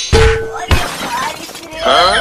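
Comic crash sound effect of glass shattering, dubbed over a fall. One loud hit comes just after the start with a short steady tone ringing under it, and a second hit follows a moment later.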